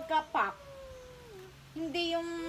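A toddler's high-pitched wordless voice, crooning in a sing-song way: a few short notes, then one long note sliding slowly downward, before the voice picks up again near the end.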